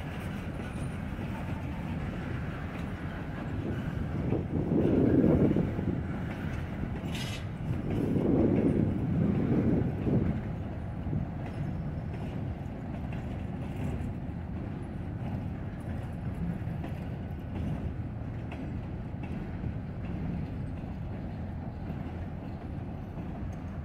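Freight train cars rolling past at low speed, a steady low rumble that swells louder twice, around five and nine seconds in.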